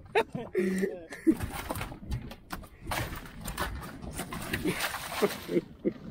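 Men laughing and calling out in the first second, then several seconds of dense rustling and knocking handling noise.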